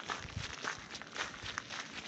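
Footsteps walking down a gravel and loose-stone dirt track, at a steady pace of roughly two steps a second.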